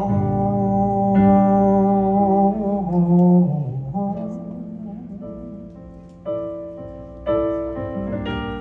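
Solo piano playing slow, sustained chords, each left to ring. The chords grow quieter over the middle, then a louder chord is struck near the end.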